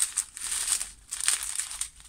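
Plastic packaging crinkling in a few short bursts as small bags of diamond-painting drills are handled.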